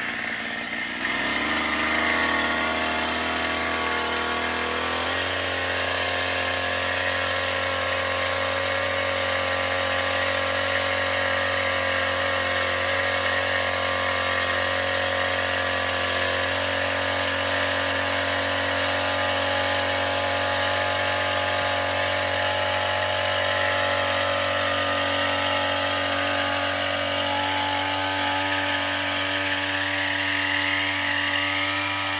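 Small two-stroke engine of a knapsack power sprayer running. It speeds up in two steps, about one second and about five seconds in, then holds a steady high speed.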